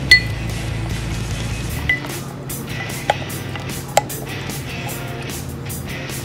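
Wooden muddler crushing mint leaves and apple pieces in a pint mixing glass, with repeated short scraping strokes. It clinks against the glass four times; the first clink, right at the start, is the loudest and rings briefly.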